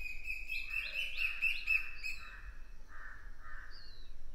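Birds chirping: a quick run of short, repeated high calls, followed by softer calls about twice a second and a higher rising call near the end.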